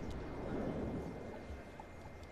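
Hall background noise in a gymnasium: a steady murmur of indistinct distant voices and room rumble.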